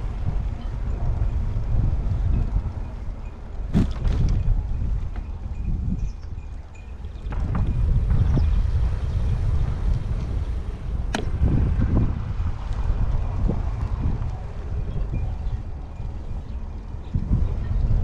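Wind buffeting the microphone of a camera moving along a path, a steady low rumble that swells and eases, with a couple of sharp clicks, about four and eleven seconds in.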